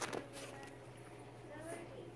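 Quiet store background with a steady low hum and faint, brief fragments of voice, and a short handling noise right at the start as a fabric pencil pouch is turned over in the hand.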